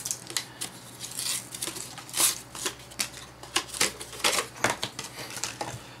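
Irregular clicks, taps and crackles of a clear plastic Treasure X Aliens toy capsule being handled while its stickers and paper inserts are peeled off.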